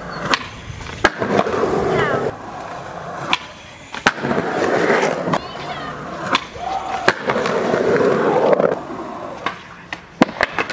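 Skateboard wheels rolling on concrete, broken by several sharp cracks of the board's tail popping and the board slapping down on landing.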